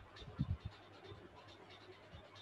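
A few soft, short low thumps close together about half a second in, over faint steady room noise.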